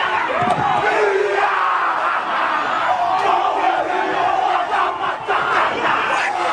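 Indigenous Australian war cry: a group of men shouting and calling together, with many voices overlapping, over steady stadium crowd noise.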